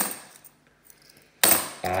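Cupronickel 50p coins clinking twice, once at the start and again about a second and a half in, each a sharp metallic click with a brief high ring.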